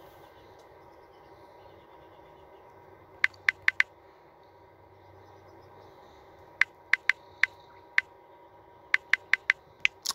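Key-press clicks from a phone's on-screen keyboard as a search is typed: four quick clicks about three seconds in, then two more runs of about five clicks each in the second half, over a faint steady hum.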